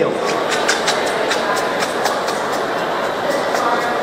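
Steady background hubbub and hiss of a large exhibition hall, with a few faint clicks.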